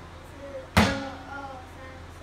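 A single drum strike on an electronic drum kit about three-quarters of a second in, sharp and loud with a short ring-out.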